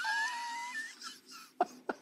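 A man breaking into helpless laughter: a thin, high-pitched squeal held for under a second, then a few short gasping breaths.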